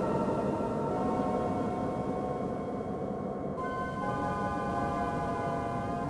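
A sustained drone of several held tones over a low rumble, like a dark synth pad in a film score. The chord shifts about a second in and again about three and a half seconds in.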